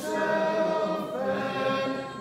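Church congregation singing a hymn a cappella, many unaccompanied voices in several parts holding long notes.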